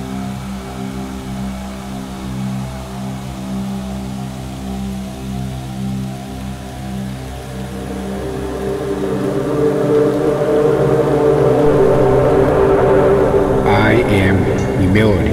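Ambient meditation music in 432–528 Hz 'healing frequency' style: steady held drone tones over a low hum, swelling and growing louder about halfway through.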